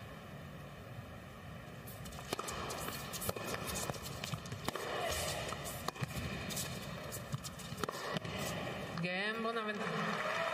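Tennis rally: sharp, irregular strikes of racket on ball, starting about two seconds in, over crowd noise in an indoor arena. A voice calls out near the end.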